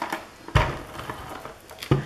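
Handling noise on a craft table: a knock about half a second in and another near the end, with paper and plastic rustling between as a plastic tape dispenser is brought over a paper doily.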